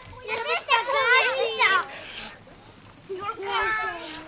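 Young girls' voices, high-pitched, talking or calling out excitedly for about a second and a half near the start, then a shorter bit of voice near the end.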